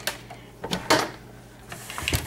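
A few short light knocks and clicks, about four spread through two seconds, as a small plastic portable TV and its cable are handled, over a faint steady low hum.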